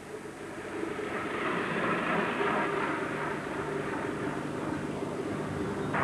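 Road traffic noise from the camcorder's own microphone: a steady rush of tyre and engine sound with a faint low hum. It builds over the first two seconds and then holds steady.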